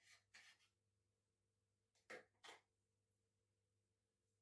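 Kitchen knife slicing on a plastic cutting board, faint: two pairs of short scraping strokes, one pair at the start and another about two seconds later.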